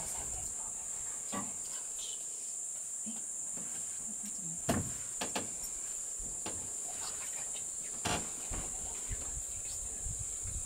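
Steady, unbroken high-pitched chorus of insects such as crickets. A few sharp knocks sound about halfway through and again near the end.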